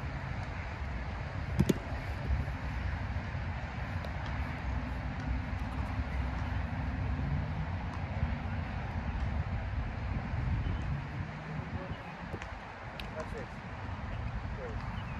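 Open-air background of a steady low rumble with faint voices, and one sharp smack about two seconds in, the loudest sound; a few fainter ticks come near the end.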